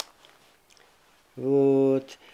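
A photo-album page being handled, giving a short click at the start, then quiet. Near the end an elderly man's voice holds one steady, drawn-out vowel, a hesitation sound before he speaks.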